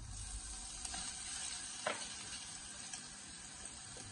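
Minced garlic sizzling in hot coconut oil with curry leaves and whole spices in a saucepan, a steady frying hiss. Two light clicks sound about one and two seconds in.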